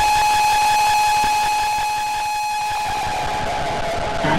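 A single sustained electronic tone held steady as the breakbeat drops out, easing slightly in level about halfway through.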